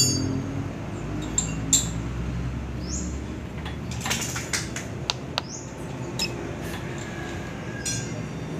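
Steady low background hum with a few scattered short clicks and brief high chirps.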